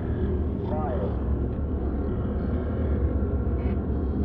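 A dense, steady low rumble, with a short wavering tone sliding up and down near the start and again about a second in.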